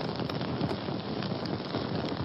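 Fire sound effect: a steady, dense crackling with no pitch, like flames burning.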